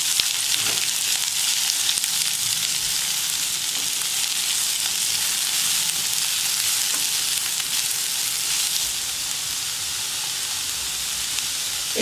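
Sliced onions and green chillies sizzling in hot oil in a nonstick frying pan while a slotted spatula stirs them. The sizzle is steady, easing a little in the last few seconds.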